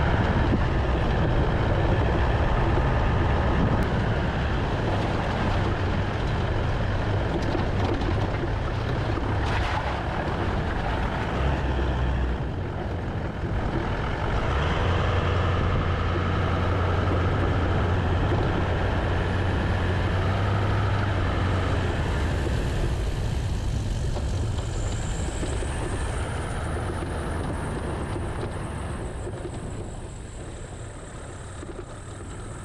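Toyota LandCruiser 200 series driving along a dirt bush track: a steady engine drone under tyre and road noise, easing off slightly near the end.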